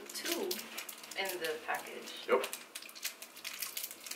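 Small Kit Kat wrapper crinkling and crackling as it is torn open, with short, quiet mumbled voice sounds in between.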